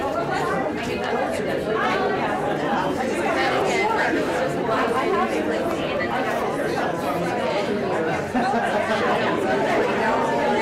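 Many people talking at once in overlapping conversations, no single voice clear enough to make out.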